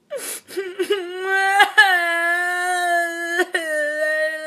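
A person crying in an exaggerated mock wail: a few short whimpering sobs, then from about a second in one long wail held on a steady pitch. The wail breaks off briefly twice and sags a little near the end.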